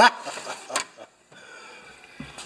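A man's short snorting chuckle, then a single light click about three quarters of a second in as the metal toolbox drawer is shut.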